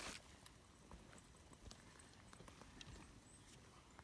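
Quiet forest floor with a footstep on fir-needle and twig litter right at the start, then a few faint, scattered snaps and rustles of twigs.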